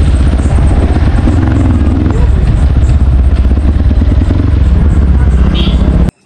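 Dirt bike engine running loudly under way, with wind noise buffeting the helmet-mounted microphone.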